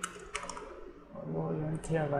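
Computer keyboard being typed on: a few sharp, separate keystroke clicks as a word is typed and corrected. A low voice comes in during the last part.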